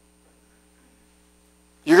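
Faint, steady electrical mains hum in a pause, with a few low hum tones and a thin high whine. A man's voice starts just before the end.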